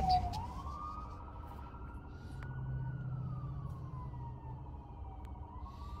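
Police car siren in a slow wail: its pitch rises for about two and a half seconds, falls for about as long, and starts to climb again near the end. It is heard from inside a car cabin over the low rumble of the car.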